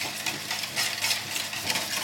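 Wire whisk beating eggs and oil in a stainless steel bowl, the wires scraping and clinking against the metal in a quick, even rhythm of about four strokes a second.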